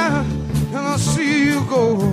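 Live blues band playing: singing over electric guitar with a bass line underneath.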